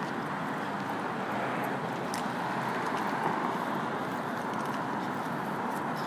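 Steady background noise with a few faint clicks, the kind heard outdoors with traffic in the distance.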